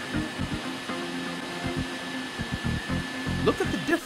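Steady rushing hiss of water pouring over shredded plastic flakes in a wash vat, under background music.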